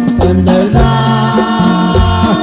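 Norteño band music, instrumental: a button accordion plays a melody over a steady bass line.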